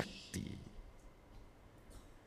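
A pause in a man's talk: a soft click about a third of a second in, then a very quiet stretch broken by a few faint ticks.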